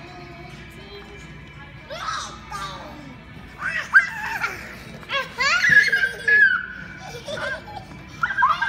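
Young children laughing and squealing in bursts that grow louder and more frequent, loudest in the second half, over steady background music.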